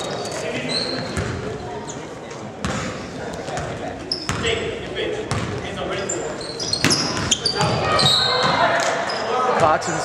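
Basketball bouncing and sneakers squeaking on a hardwood gym floor, with crowd chatter echoing in the large hall.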